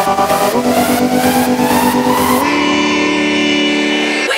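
Electronic dance music in which a buzzing, engine-like synth drone slowly rises in pitch over a steady hi-hat beat. About two and a half seconds in the beat drops out, leaving only the held tones.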